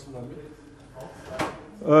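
A man's hesitant speech in a room, broken by a pause, with a single short click about a second in.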